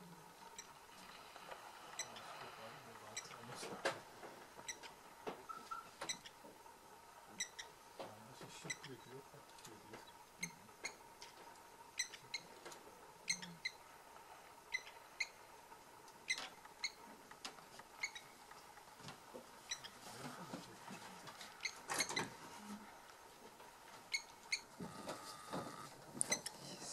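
Faint outdoor ambience, dotted throughout with short, high chirps or ticks that come singly or in quick pairs at irregular intervals.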